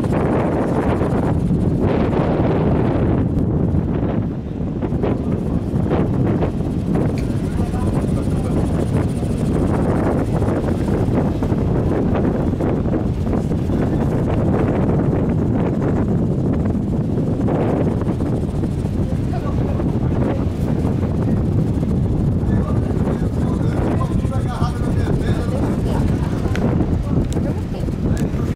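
Steady low wind rumble buffeting the microphone, with indistinct voices in the background.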